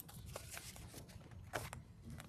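Faint rustling and small handling noises of people moving papers and things on a desk, with one louder rustle about a second and a half in.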